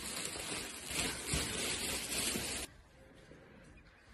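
Plastic bags and a woven polypropylene sack rustling as they are handled close up. The rustling cuts off abruptly about two-thirds of the way through.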